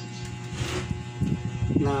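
Steady background music under light clicks and knocks of wires and a small transformer being handled, with a man's voice starting near the end.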